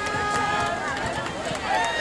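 People talking indistinctly, with faint music in the background.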